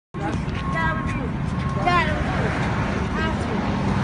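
Street traffic rumbling steadily, with several people's voices talking and calling over it.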